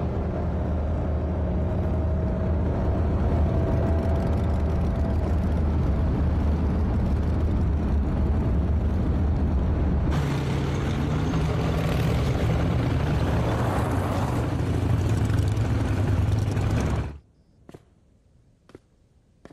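Motor vehicle engines running under way, a loud, steady low drone that changes character about ten seconds in. The drone cuts off abruptly near the end, leaving near silence with a few faint clicks.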